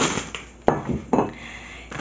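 Groceries handled and set down on a table: about three knocks and clinks, with packaging rustling between them.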